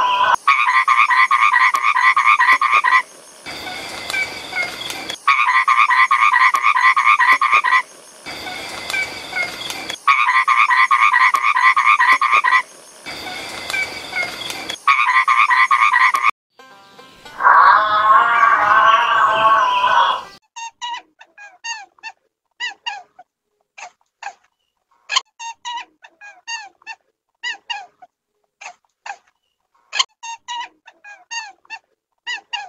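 Toad trilling: four long buzzing trills of about two and a half seconds each, with quieter gaps between them. A different loud call follows for a few seconds, then scattered short, high squeaks and chirps fill the last third.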